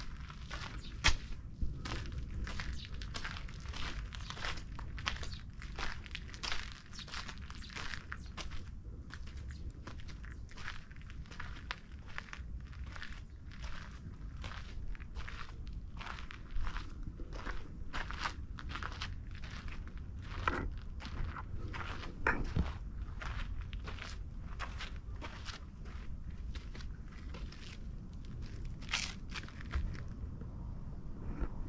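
Footsteps crunching on a dirt-and-gravel path at a steady walking pace, about two steps a second, over a steady low rumble.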